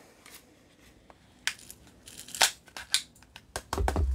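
Sharp plastic clicks and snaps as a white plastic click-measuring thyme dispenser is handled and opened up, a few single clicks then a cluster near the end with a soft low bump.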